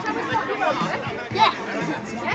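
People chattering, several voices overlapping, with a louder exclamation about one and a half seconds in.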